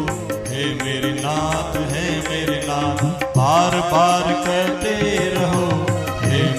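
Hindu devotional bhajan music: a gliding melody over a held drone note, with a steady percussion beat.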